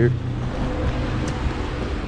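Steady road traffic noise from vehicles passing on the road alongside, with a faint engine tone running through it.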